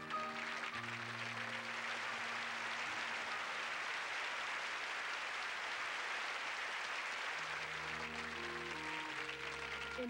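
Audience applauding steadily over soft music with long held notes; a new phrase of the music comes in near the end as the clapping thins.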